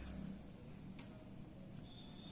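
A faint, steady, high-pitched insect trill that runs on unchanged, with one light tick about halfway through.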